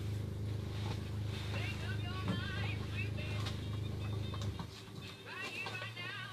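Indistinct voices over a steady low engine-like hum; the hum drops away about four and a half seconds in.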